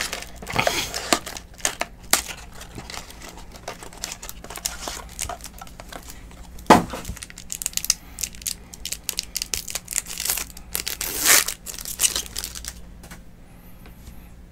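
Plastic shrink-wrap and a foil trading-card pack crinkling and tearing as they are opened by hand, with many small crackles, a louder rip about seven seconds in and another near eleven seconds.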